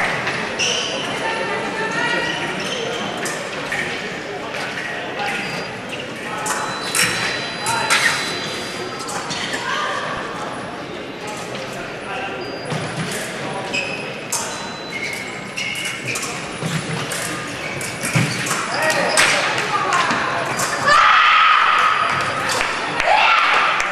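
Echoing fencing-hall ambience: many voices in a large hall with sharp clicks and stamps from foil blades and fencers' feet on the piste, and a few short electronic beeps. A louder voice rings out near the end as a touch is scored.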